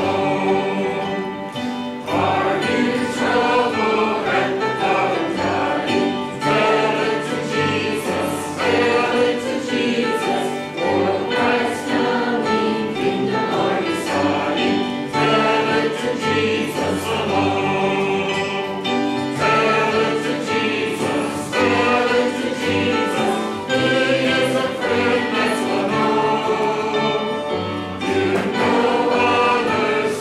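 Church choir and congregation singing a hymn together with instrumental accompaniment, in long sustained phrases.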